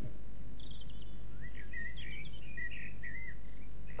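European robin singing faintly: a few high chirps, then a short warbling phrase, over a steady low hum.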